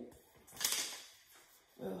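Paper squares and card discs being put down and picked up on a tabletop: a short rustle about half a second in, then a fainter one.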